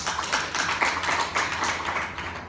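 Audience applauding: many hands clapping in a short, dense burst that dies away near the end.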